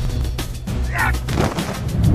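A man's harsh, wordless yell, one short cry about a second in and another near the end, over background music.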